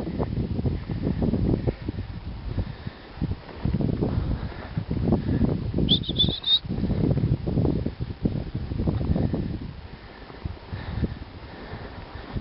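Irregular rustling and crunching from a four-dog Alaskan Malamute team running in harness over snow, coming in uneven surges about a second apart. A single short, high rising chirp sounds about six seconds in.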